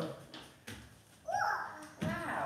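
A toddler's short babbled vocal sound about a second and a half in, one high voice that rises and falls, with a couple of faint knocks before it.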